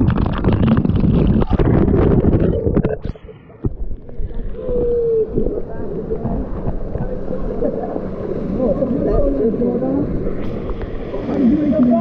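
A waterfall pours straight onto the camera, a loud, crackling splash of water for about three seconds that cuts off suddenly. After that comes a steady rush of flowing water with people's voices calling out over it.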